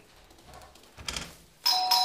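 Doorbell chime ringing once, coming in suddenly about one and a half seconds in as two steady tones that fade away.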